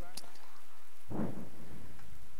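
Steady background hiss, with a faint click just after the start and a soft thump about a second in.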